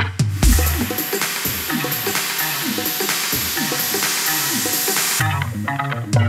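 Animated logo ident's sound effect with electronic music: a low hit about half a second in, then a dense sizzling, crackling hiss with short falling low tones repeating under it, which cuts off suddenly about five seconds in.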